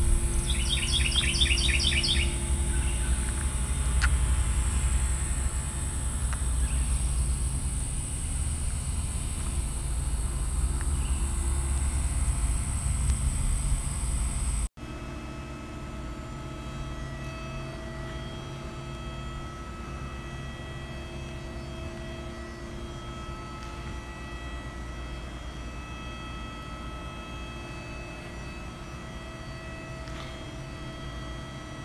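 Outdoor ambience: a steady high-pitched insect drone over a low rumble, with a short rapid bird call about a second in. About halfway through it cuts to quieter indoor room tone with a faint hum.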